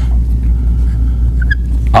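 A loud, steady low hum, with two or three faint short squeaks of a marker writing on a whiteboard about one and a half seconds in.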